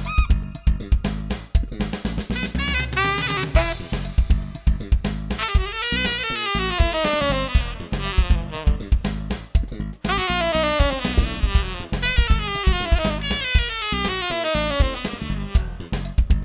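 Jazz-funk music: a saxophone over a drum kit beat. From about six seconds in the melody plays fast descending runs, one after another.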